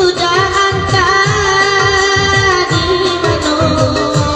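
Saluang dangdut music through a PA: a woman sings a long, wavering melody into a microphone over a steady, repeating dangdut drum beat.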